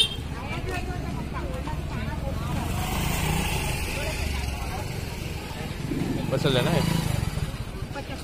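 Indistinct voices of people talking nearby, loudest near the end, over a steady low background rumble.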